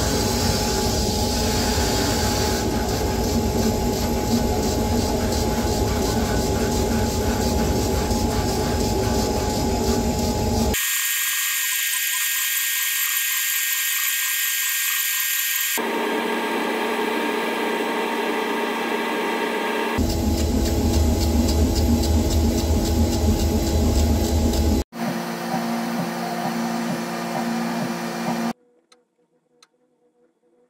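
Laser cutter running while it cuts a stencil, a steady mechanical noise with steady tones whose character changes abruptly several times. In the last second or so it gives way to near silence with a few faint ticks.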